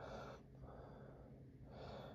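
Near silence, with a faint breath drawn in near the end.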